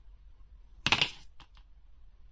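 A short, sharp clatter of hard plastic about a second in, followed by two light clicks: a plastic action-figure part, the Attuma Build-A-Figure arm piece, being handled and set down.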